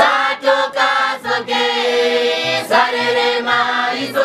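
A group of voices singing a traditional Kavango song together, holding long notes and sliding between them, with sharp percussive beats through the singing.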